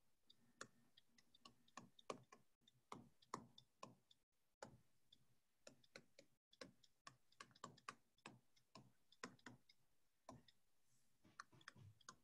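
Near silence with faint, irregular clicks, a few a second.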